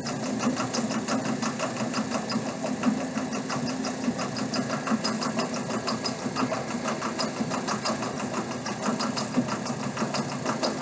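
Cumulative compound DC motor running with no load at about 1,750 RPM on 120 volts: a steady hum with a fast, even ticking running through it.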